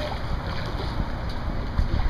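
Wind rumbling on the camera's microphone, with a few soft bumps.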